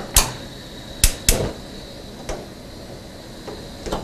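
A metal frying pan being handled on a gas range's grates: a handful of separate sharp metallic clicks and knocks, two close together about a second in, over a faint steady hiss.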